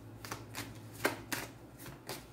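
A deck of tarot cards being shuffled by hand, with about five short, sharp card snaps spread over two seconds.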